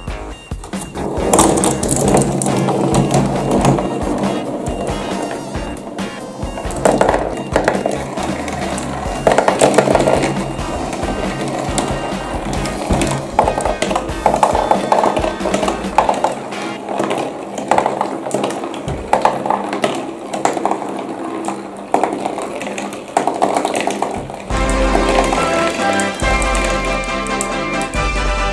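Glass marbles rolling and rattling along cardboard marble-run tracks, in swelling waves of rolling noise with small clicks, under background music.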